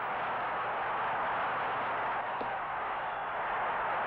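Steady, even hiss-like noise from an old fight film's soundtrack, with no voices in it.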